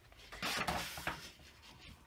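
A sheet of patterned scrapbook paper rustling as a hand slides it and lays it flat on a desk. There is a short swish about half a second in that fades away after about a second.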